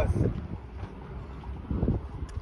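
Wind buffeting the microphone, a low uneven rumble, with a snatch of men's voices at the very start.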